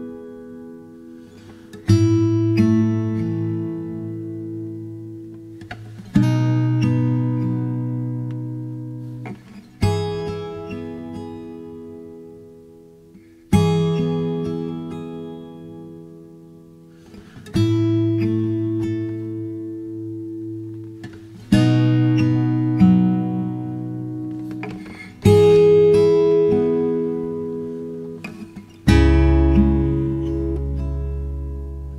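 Background music of slow acoustic guitar: a chord struck about every four seconds, eight times, each left to ring out and fade before the next.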